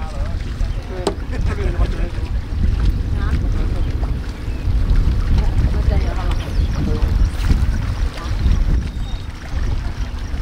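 Steady low rumble of wind buffeting the microphone, over the wash of waves on a rocky lakeshore.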